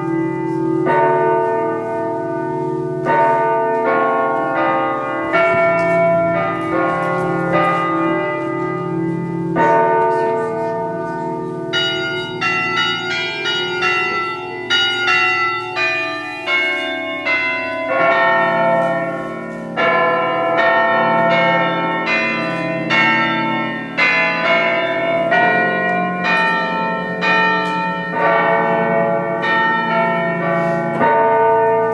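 Electronic carillon played from a keyboard, its voice sampled from the Liberty Bell (Laisvės varpas): a bell melody of struck notes, about one a second at first and quicker in the middle, over a held low drone.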